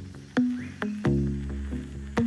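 Electronic music track: deep, sharply attacked pitched notes struck in an uneven rhythm, a few a second, each ringing on briefly, with a short rising higher tone about half a second in.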